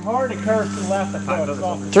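Men's voices talking, unclear and partly overlapping.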